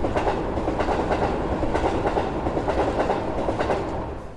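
Train running along the rails, its wheels clacking over the rail joints in a steady stream.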